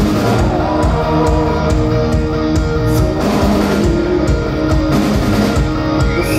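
A rock band playing live, with electric guitars over bass and a steady drum beat, recorded from the crowd.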